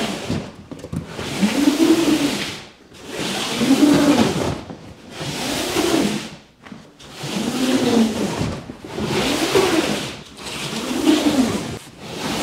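A large cardboard bike box scraping across a wooden floor in about seven pushes, each lasting about a second and a half. Each push has a low groan that rises and falls.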